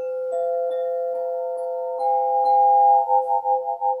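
Svaram Air 9-bar swinging chime struck on several of its metal bars with a mallet, the notes ringing on and layering into a sustained chord. From about three seconds in, the ringing pulses rapidly in volume.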